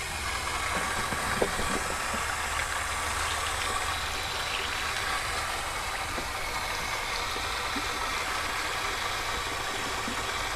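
Garden hose running, a steady spray of water onto a fish and its cutting board as it is rinsed; a short knock about one and a half seconds in.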